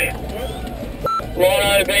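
Inside a team car in a race convoy, quieter cabin sound and faint radio voices give way to a single short beep about a second in. A man's voice then calls out that a rider is down after a crash.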